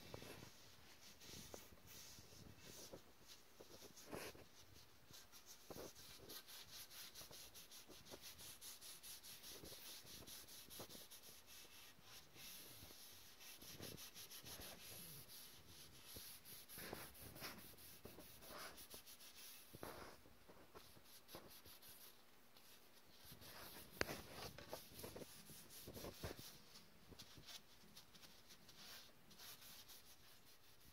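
Faint rubbing of a paper towel wiping teak oil onto a bare wooden walking stick, in quick repeated strokes, with a few light knocks, the sharpest a little before three-quarters of the way through.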